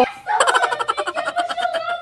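A person's voice in a fast run of short, high-pitched pulses, about ten a second, like stuttering laughter or squealing. It is a reaction to having liquid poured over the head, just after a long scream.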